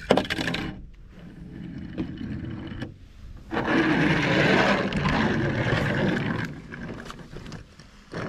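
A small die-cast toy car rolled by hand across a smooth board: a short clatter at the start, then a rolling scrape of its wheels for about three seconds around the middle.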